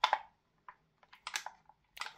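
Light clicks and taps of a gas blowback airsoft MP5K's parts being handled during reassembly: one sharper click at the start, then a scatter of small ones about a second in.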